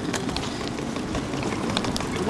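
Footsteps and handling noise from a handheld camera carried at walking pace: scattered light clicks and taps over a steady low rumble.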